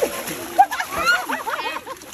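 Several voices shouting and shrieking over one another while two people wrestle in wet paddy mud, with mud splashing and slapping under them and one sharp splat a little after the start.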